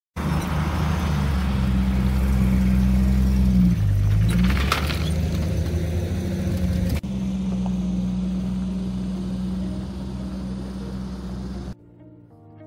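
Jeep Wrangler YJ engine running steadily with a low, even drone, briefly shifting pitch about four seconds in. The sound changes abruptly at about seven seconds to a slightly quieter steady run and drops away suddenly just before the end.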